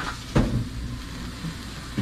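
A spatula knocks once against a stainless steel wok of frying yardlong beans about half a second in, over a low steady rumble.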